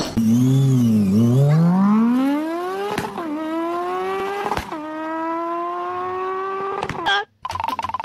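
Car engine accelerating through the gears: its pitch climbs, drops sharply at two gear changes about three and four and a half seconds in, climbs again, and cuts off suddenly about seven seconds in.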